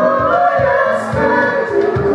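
Live band music: several voices singing together in harmony over acoustic guitar, with a steady low beat of about two thumps a second.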